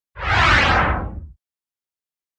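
Whoosh sound effect over a low rumble, marking an animated title card. It lasts just over a second, fades from the top and then cuts off.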